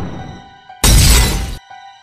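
Glass-shattering sound effect over a held, ringing musical chord. The noise of an earlier crash fades away, then a second crash comes a little under a second in and cuts off suddenly.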